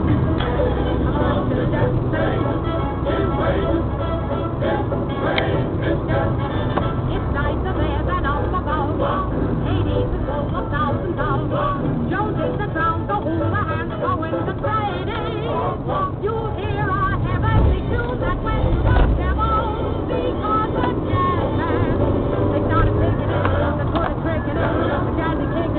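A song with singing playing on the car's CD player, heard inside the cabin over the steady low hum of the engine and tyres.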